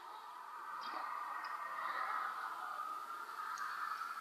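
A man drinking beer from a pint glass: a few faint sipping and swallowing clicks over a soft hiss that swells in the middle and fades.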